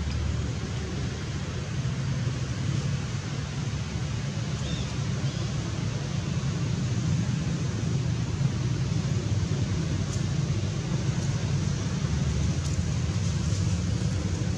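Steady outdoor background noise: a low rumble with an even hiss over it, and no distinct events.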